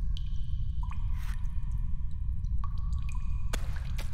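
Water dripping in an ice cave: a few separate drips, each a short ringing ping, over a low steady rumble.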